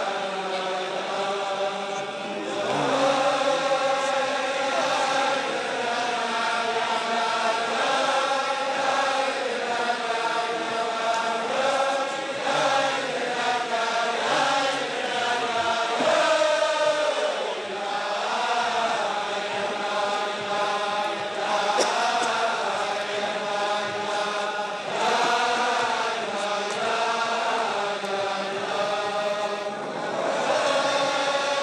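A large crowd of men singing a Chasidic niggun together in unison, a slow melody with long held notes.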